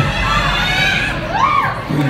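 Crowd cheering and whooping, with high-pitched yells that rise and fall.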